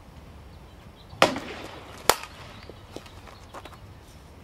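Softball bat hitting a pitched softball with a sharp crack about a second in, followed under a second later by a second sharp knock.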